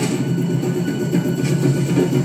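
Tense film score with drums, played from a television's speakers and recorded in the room, so it sounds thin with no deep bass.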